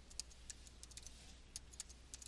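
Computer keyboard being typed on, faint keystroke clicks at roughly four or five a second as a password is entered.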